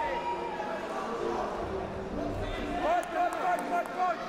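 Indistinct voices calling out in a large hall, over steady arena background noise; for a moment near the end, a voice rises and falls in short calls.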